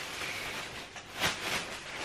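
Soft rustling as a shopping bag of fabric is handled, briefly louder a little past the middle.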